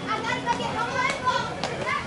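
Raised, high-pitched voices calling out across an outdoor softball field, with no clear words. A few short, sharp clicks come in the second half.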